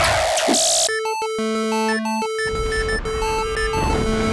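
Dense, noisy live music cuts off about a second in and gives way to an electronic jingle of clean, steady synthesizer tones at several pitches, switching on and off.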